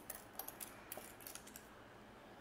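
Faint light rustles and small clicks of paper dollar bills being handled one by one as they are counted.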